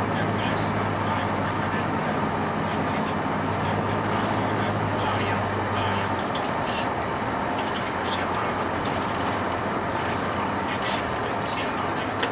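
Bus interior while cruising: the engine and tyre and road noise run steadily. A low engine hum drops away about six seconds in.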